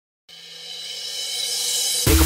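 Intro build-up of a DJ trance remix: a held chord with a hiss above it fades in about a quarter second in and grows steadily louder.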